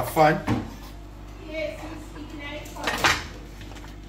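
Kitchen prep clatter: a few sharp knocks of a chef's knife and hands on a wooden cutting board as cut vegetables are gathered up. A brief loud voice sound at the start and faint talk in the background.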